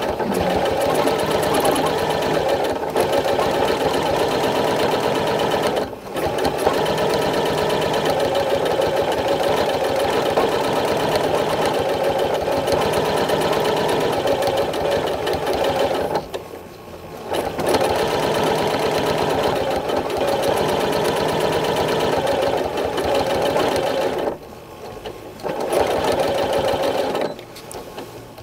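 Janome Continental M8 sewing machine stitching fast in free-motion quilting under its Accurate Stitch Regulator, which sets the stitch speed by how fast the fabric is moved. The stitching drops off three times, briefly about six seconds in and for a second or so around sixteen and twenty-four seconds in: the machine slows to a crawl whenever the fabric stops moving.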